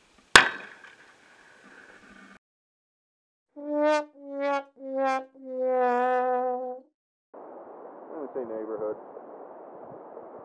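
A single .44 Magnum revolver shot, sharp and brief, with a short ring-out. A few seconds later comes a descending four-note brass 'sad trombone' sting, with the last note held long.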